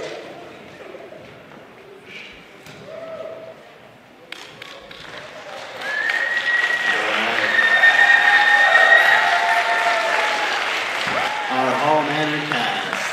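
Audience applause that starts about four seconds in and swells to a loud ovation, with sustained high-pitched yells and cheers over the clapping.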